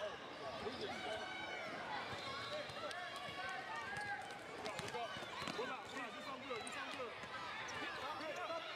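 A basketball being dribbled on a hardwood court, with short impacts scattered through, amid the overlapping voices of players and spectators in a gym.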